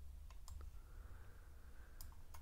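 A few faint computer clicks over quiet room tone, the clearest about half a second in.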